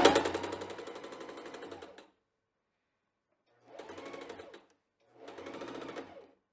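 Bernette 05 Academy electric sewing machine stitching through layered quilting fabric with rapid, even needle strokes. It runs for about two seconds and stops, then sews two short bursts of about a second each.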